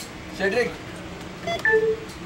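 Electronic shipboard card reader beeping as a passenger's card is scanned: a short chirp, then a steady beep of two tones sounding together, about a second and a half in.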